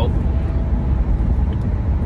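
Steady low rumble of a car on the road, heard from inside the cabin: engine and tyre noise.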